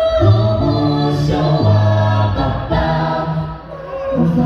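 Mixed-voice a cappella gospel group of six singing in close harmony into microphones, a low bass voice holding long notes under sustained chords. The sound drops briefly near the end before the next phrase comes in.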